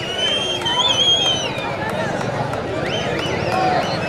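Spectators' crowd noise: a steady hubbub of many voices with scattered higher-pitched shouts and calls.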